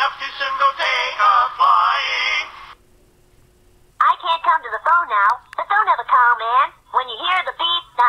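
Two novelty answering-machine greetings. The first, a voice singing over music, ends about two and a half seconds in. After about a second of near silence a second recorded greeting begins, a voice with strongly rising and falling pitch.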